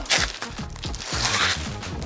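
Clear plastic wrapping rustling and crinkling as a soundbar is slid out of its plastic sleeve, over background music.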